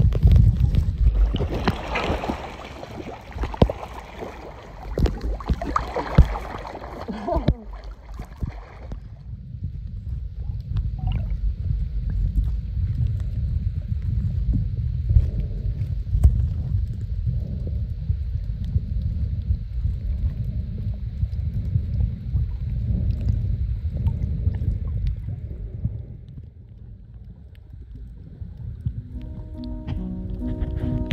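Water sloshing and bubbling around an underwater camera held just below the surface, with many crackles and knocks, for about the first nine seconds. Then a steady, muffled low rumble of water as the camera stays submerged. Music begins right at the end.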